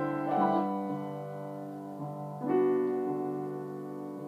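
Grand piano played slowly: a chord about half a second in, a quieter note at two seconds, and a fuller chord about two and a half seconds in, each left to ring and fade.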